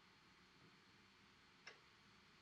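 Near silence: room tone, with one faint click near the end.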